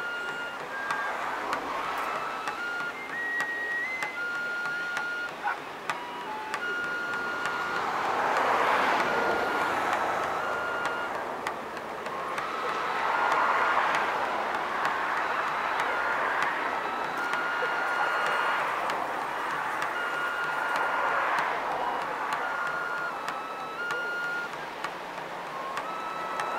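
Japanese kagura flute playing a slow melody of long held notes, stepping between a few pitches. Waves breaking on the beach swell up and fade behind it every few seconds.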